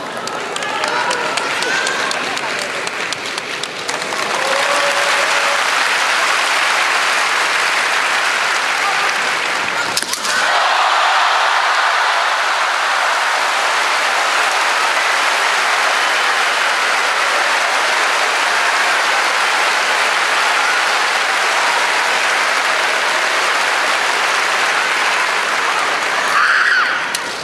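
Large audience applauding steadily in an arena. The applause swells in about four seconds in and carries on, with a short break about ten seconds in, over a few raised voices at the start.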